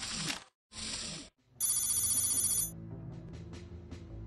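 Television title-sting sound design: two short whooshes, then about a second of loud, high, fast-trilling ringing like a telephone bell, settling into a low music bed with a few light ticks.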